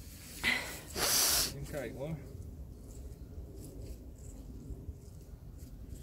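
A person sniffing hard close to the microphone, twice: a short sniff about half a second in, then a longer, louder one about a second in.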